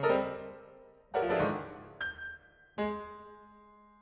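Solo piano playing sparse, separate chords: four strikes, each left to ring and fade, the last held and decaying through the final second.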